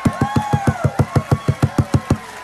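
Live church band music in the recorded sermon: fast, evenly spaced drum hits, about seven a second, with held tones above them.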